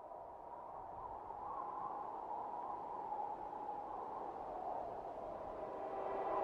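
A wavering ambient drone that swells steadily louder, the opening of a dark intro soundscape.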